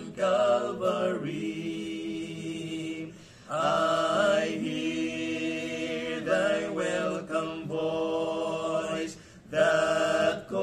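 Three men singing a hymn together in harmony, holding long notes, with short breaks for breath about three seconds in and just before the end.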